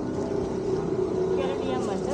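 A steady motor drone holding one unchanging pitch, with faint voices over it about a second and a half in.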